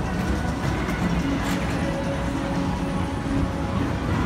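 Tomorrowland Transit Authority PeopleMover cars rolling along the elevated track, a steady rumble, with ride music playing underneath.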